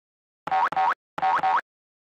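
Cartoon sound effect: four short pitched tones in two pairs, each holding a note and then gliding upward at its end.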